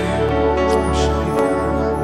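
Live worship band music with sustained keyboard chords.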